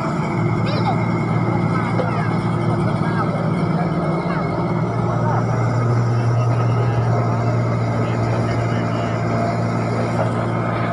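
Komatsu crawler excavator's diesel engine running under load as it digs, a steady low drone that grows a little louder about halfway through.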